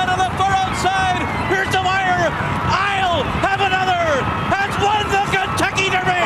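Racetrack announcer calling a horse race finish in a raised, high-pitched voice over the noise of a crowd.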